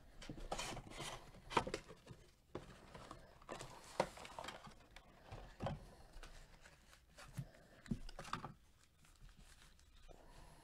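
A 2020 Panini Phoenix football hobby box being opened and its stack of foil card packs slid out and handled, with irregular crinkling and rustling of cardboard and foil and several sharper cracks.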